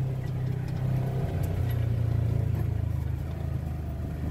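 Side-by-side UTV engine running steadily while the vehicle drives down a steep dirt trail, heard from the driver's seat; the engine note wavers briefly about a second in, then settles.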